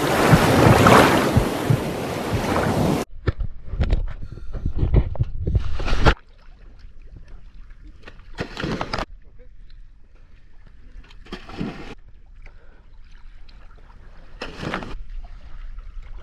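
Loud rushing splash of water for about three seconds, then mixed handling noise. A sudden drop in level about six seconds in is followed by a scuba diver's exhaled bubbles from the regulator, a short burst about every three seconds.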